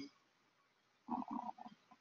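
A pause in a man's speech: near silence, then about a second in a faint, brief voice-like murmur from the speaker before he talks again.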